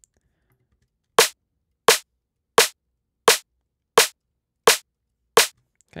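Sampled drum-and-bass snare played alone on beats two and four of a 172 BPM loop: seven sharp, identical hits, evenly spaced about 0.7 seconds apart, starting about a second in.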